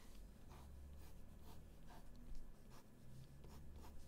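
Pen writing on paper: faint, irregular scratching strokes as a box and lines are drawn, over a low steady room hum.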